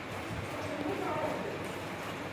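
Squirts of milk from a Gir cow milked by hand, hitting the milk in a pail below, with faint voices in the background.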